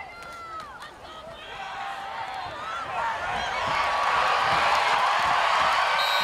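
Football crowd cheering: scattered shouts at first, then many voices together growing louder from about three seconds in and holding loud as the ball carrier reaches the end zone for a touchdown.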